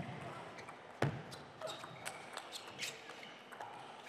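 A table tennis rally: the celluloid-type plastic ball clicks sharply off the rubber-faced bats and the table in quick succession, with one heavier knock about a second in.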